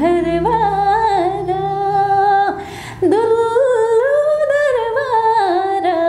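A woman singing unaccompanied in Nepali. She holds long notes with small turns and slides, and pauses briefly for breath about two and a half seconds in.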